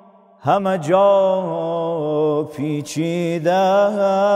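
A man's voice chanting a devotional madahi in long, held, wavering notes, coming in with a rising slide about half a second in after a brief pause.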